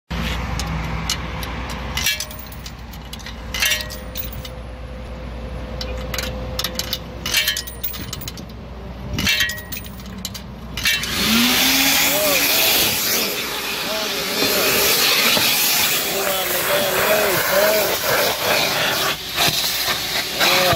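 Quarters clicking into the coin slot of a coin-operated car wash vacuum, a few separate clicks. About eleven seconds in, the vacuum motor starts with a short rising whine and then runs with a steady rush of suction.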